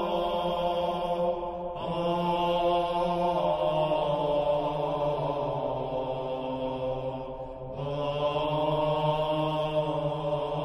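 Slow chanted vocal music with long held sung notes, broken by short pauses about two seconds in and again near eight seconds.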